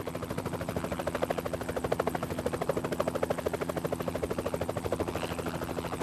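Helicopter rotor chopping in a rapid, regular beat, with a steady engine hum underneath.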